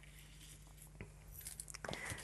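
Faint light clicks of small pieces of glass being handled and set down, one about a second in and a few more near the end, over a low steady hum.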